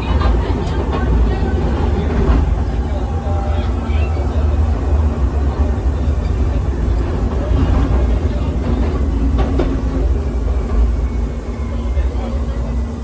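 Siemens S200 light-rail car running on rails, heard from inside the car: a loud, steady deep rumble with a faint steady hum and a few brief clicks, over passenger chatter.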